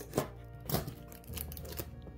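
Scissors cutting through packing tape on a cardboard box: a few sharp snips and cuts, spread across the two seconds.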